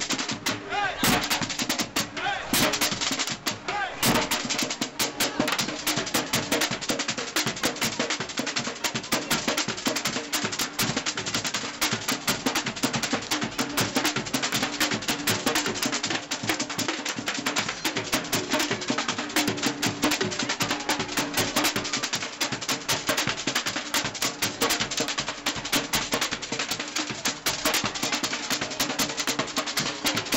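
A street drum band playing a fast, dense rhythm with sharp, rapid drum strikes, while voices from the crowd show through underneath.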